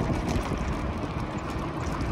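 Steady wind rush over the microphone with low rumble from an e-bike riding on asphalt, a noisy hiss with no clear motor tone.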